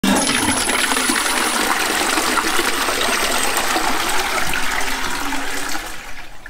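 Toilet flushing: water rushes loudly into the bowl and drains. The sound starts abruptly, holds steady and eases off near the end.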